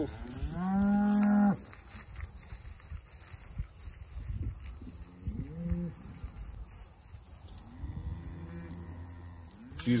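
Cattle mooing as a cow leads her newborn calf away. A loud call about half a second in lasts about a second, then come two shorter calls around the middle and a longer call near the end.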